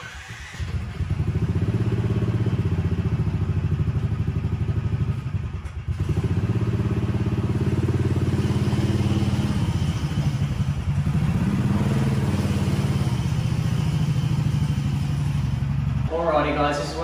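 A swapped-in 440cc single-cylinder engine in a golf-cart buggy, running steadily under throttle as the cart drives. It drops away briefly about six seconds in, then picks up again.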